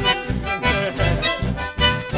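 Live band music, an instrumental passage between sung lines: accordions play the melody over strummed acoustic guitars and an electric bass, with a steady beat.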